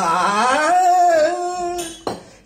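A man singing solo without accompaniment, his voice gliding up into a long held note that ends just before two seconds in.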